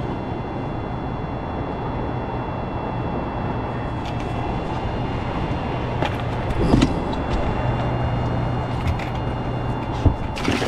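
Steady rushing noise and a low steady hum on a small fishing boat, with a few sharp clicks and a knock about seven seconds in.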